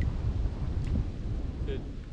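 Wind buffeting the microphone: a steady low rumble with no other clear sound.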